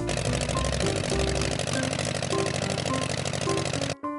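Propeller airplane engine sound effect: a steady, fast-pulsing buzz that stops abruptly, with light background music notes underneath.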